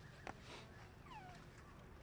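A sharp click about a quarter second in, then a short, high squeak falling steeply in pitch, a young monkey's call, over faint background hiss.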